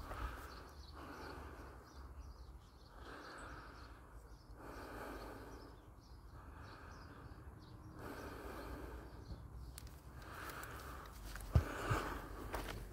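Faint, slow breathing of a person walking, one breath every second or two, over a steady low rumble on the microphone. A single sharp knock near the end is the loudest sound.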